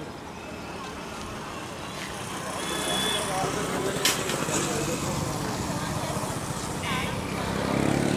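Street traffic and vehicle engine noise, steady, with faint voices in the background and a sharp click about four seconds in.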